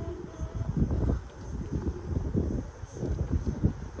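Wind buffeting the microphone outdoors: a low, uneven rumble that swells and fades in gusts.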